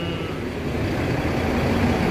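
Steady low rumble of road traffic, motor vehicles passing on the street.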